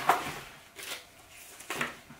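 Cardboard box flaps and paper inserts being handled while a box is unpacked: a light knock at the start, then two short papery rustles.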